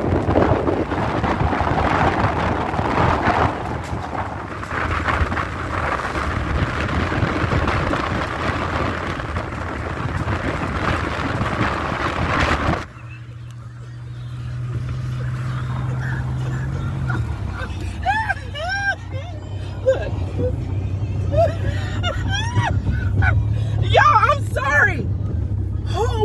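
Noise from a car in traffic that cuts off abruptly about halfway through. A steady low hum follows, with scattered short chirping sounds in the last several seconds.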